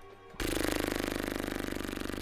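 A buzz at a steady pitch with a fast pulsing flutter. It starts suddenly about half a second in and lasts a little under two seconds.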